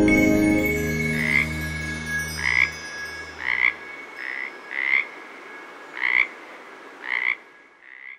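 Frogs croaking in short calls, about one a second, over a thin steady high tone, as soft music fades out in the first few seconds.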